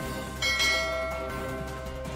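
A bell chime sound effect struck once about half a second in, ringing and fading over about a second, over steady background music.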